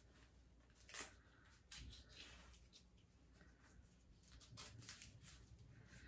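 Near silence, with a few faint, brief rustles of the elbow brace's fabric straps being pulled and fastened.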